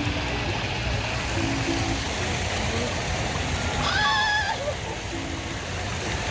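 Steady rush of water from a mini-golf course's man-made stream and waterfall. About four seconds in, a brief wavering high-pitched call sounds over it.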